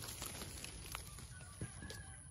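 Faint outdoor background with a few short, faint bird calls in the second half, such as distant fowl clucking.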